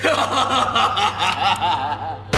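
A person laughing in a quick run of short, repeated chuckles.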